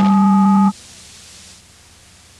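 Steady electronic tones, a low one and two higher ones held together, cut off suddenly under a second in, leaving only a low hiss.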